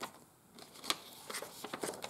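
Paper handling on a junk journal: soft rustling and small taps as the pages are turned, with one sharp click just under a second in.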